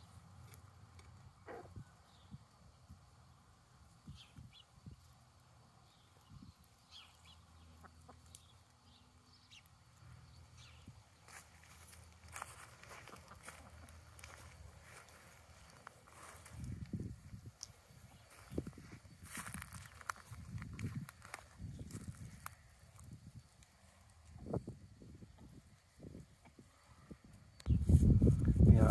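A flock of chickens foraging, heard faintly, with soft clucking. Scattered low thumps and rustles come in the second half.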